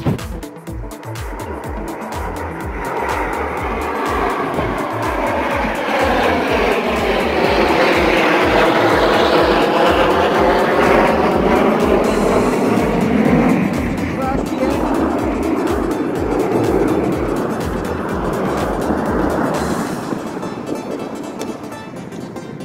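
An aircraft passing low overhead: a rushing noise that swells over several seconds, peaks near the middle and fades away, its pitch sweeping down as it goes by. Under it runs background electronic music with a steady bass beat.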